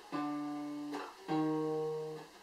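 Single fretted notes plucked one at a time on an Epiphone steel-string acoustic guitar: two clear, buzz-free notes, the second about a second in, each ringing and fading. A brief string noise between them comes from the fretting finger moving to the next fret.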